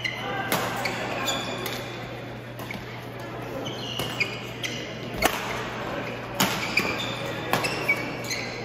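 Badminton rally: rackets striking the shuttlecock with sharp cracks, the loudest about five seconds in and again just past six seconds, while court shoes squeak in short high chirps on the synthetic floor.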